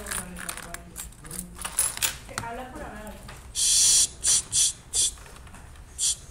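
A person shushing: one long hissed "shh" a little past halfway through, then three short ones in quick succession, after faint murmured voices.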